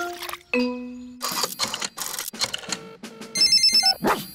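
Cartoon telephone sound effects: a short musical note, a run of clicks as a rotary telephone is dialled, then a rapid trilling telephone ring near the end.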